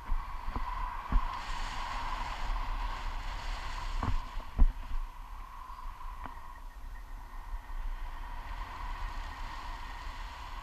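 Airflow buffeting an action camera's microphone in flight under a tandem paraglider, a steady rushing rumble that grows stronger for a couple of seconds early on. A few short sharp thumps break through it, the loudest about four and a half seconds in.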